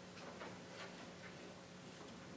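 Quiet meeting-room tone with a low steady hum and a few faint, irregular clicks.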